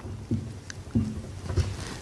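Marker writing on a whiteboard: a few short, soft strokes against the board.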